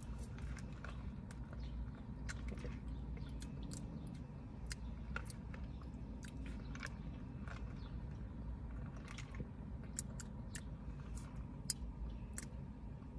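Quiet mouth sounds of someone sipping an iced fruit drink with fruit chunks and chewing: a scatter of small clicks and smacks over a low steady hum.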